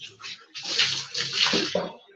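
Water poured from a dipper over the body, splashing onto the concrete floor of a bucket bath: a short splash, then a longer pour that surges twice.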